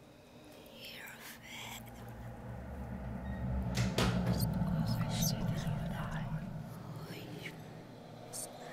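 Whispered voices over a low drone that swells to its loudest about halfway through and then fades, with a couple of light clicks about four seconds in.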